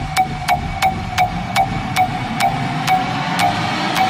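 Intro of an electronic dance music DJ mix: a short pitched click repeats steadily and slows from about three to about two a second, over a low droning pad.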